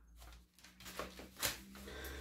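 Quiet room tone with a faint steady low hum and a few soft, brief clicks or rustles around the middle.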